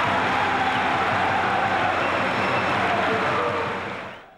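Football stadium crowd cheering and clapping, a dense steady roar that fades out near the end.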